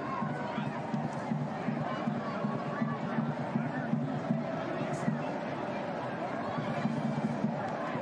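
Steady murmur of a stadium crowd at a soccer match, indistinct voices and chatter with no single loud event.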